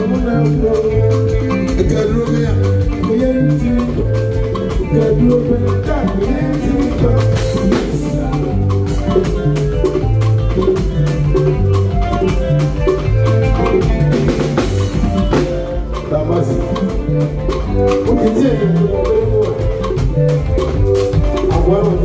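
Live highlife band playing: electric guitar, bass, drum kit and congas over a steady dance beat, with a singer's voice over the band.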